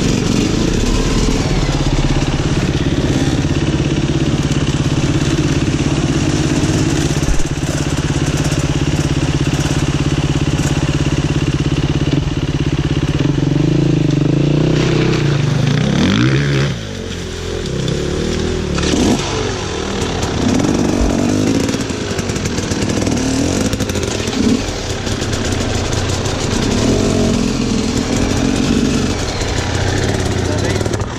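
Sherco Six Days enduro motorcycle engine idling steadily up close for about sixteen seconds, then revved in rising and falling bursts as the bikes pull through a rocky stream crossing.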